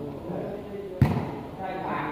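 A volleyball struck hard by a player once, about halfway through, a single sharp smack that is the loudest sound here. Spectators' voices chatter underneath.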